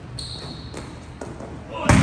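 Volleyball spiking drill on a hardwood gym floor: a thin squeak in the first half, then shoe squeaks as the hitter plants, and a loud sharp hit just before the end as the hitter jumps and strikes the ball, ringing in the hall.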